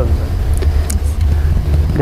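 A steady low rumble in a pause between voices, with a couple of faint clicks about half a second and a second in.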